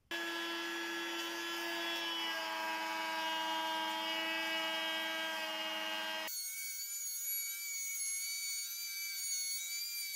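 Handheld electric router with a slot-cutting disc bit running at speed and cutting a groove along the edge of a wooden board. It is a steady high-pitched whine that cuts in abruptly, and about six seconds in it switches to a thinner, higher whine.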